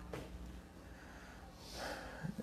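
A pause in a man's speech with low room hum; near the end, a soft audible breath in before he speaks again.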